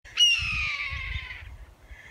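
A hawk's single scream: a harsh call that starts sharply and falls slowly in pitch over about a second and a half, over a low rumble.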